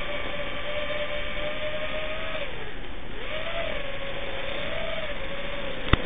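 FPV racing quadcopter's brushless motors and propellers whining in flight, one steady pitch that drops as the throttle eases about two and a half seconds in, then climbs back and wavers as the quad is flown on.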